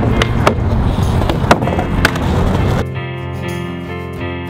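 Skateboard wheels rolling on pavement with several sharp clacks of the board, the loudest about halfway through, over background music. Near the end the skate sound cuts off and only piano music is left.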